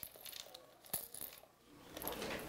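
Faint light clicks and rattles of plastic medicine bottles being handled on a table, with one sharper click about a second in.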